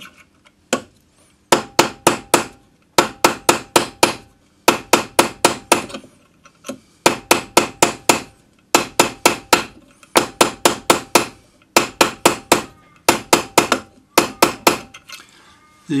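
Plastic tapered hammer striking a silver ring band on a metal anticlastic forming stake, forming its curve: quick runs of four to six sharp taps, about four a second, with short pauses between runs as the ring is turned.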